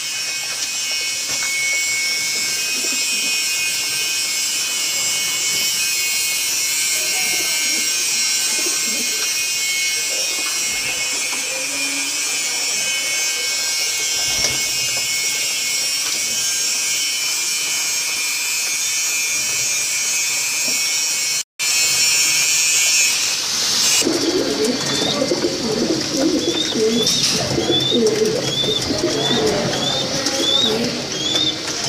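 Domestic pigeons cooing in a loft under a steady high hiss. About 24 seconds in, the hiss falls away and the cooing comes through more clearly, with short high peeps about once a second.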